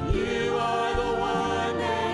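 Worship song sung by a lead singer and a choir of many voices, with live orchestra accompaniment.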